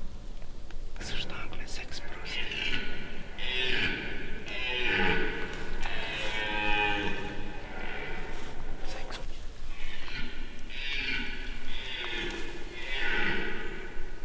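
Hushed whispering voices in a series of short phrases, with a pause in the middle.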